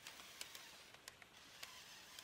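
Near silence: a faint hiss with a few soft clicks.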